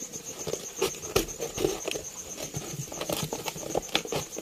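Scissors cutting into a thin plastic soda bottle: irregular snips and crackling of the plastic as the blades work through it.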